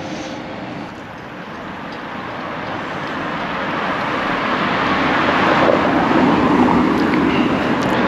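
A motor vehicle on the road, its engine and tyre noise growing steadily louder over several seconds as it draws near.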